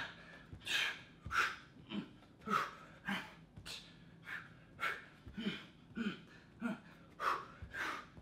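A man panting hard from high-intensity exercise, with rapid, forceful breaths about every two-thirds of a second while he works through up-down planks. A few soft thuds of hands and forearms landing on the rubber gym floor come in between.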